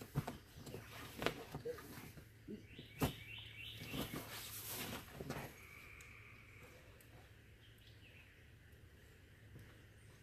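A person scrambling out of a camping hammock: rustling fabric and several sharp knocks and thumps over the first five seconds or so, then it goes quiet. A bird chirps a quick run of notes about three seconds in and gives a longer call about six seconds in.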